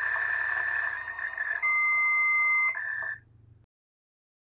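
An electronic machine-noise sound effect standing in for the card-shuffling machine at work: a steady buzzing tone that switches to a different two-note tone about a second and a half in, switches back about a second later, and fades out a little after three seconds.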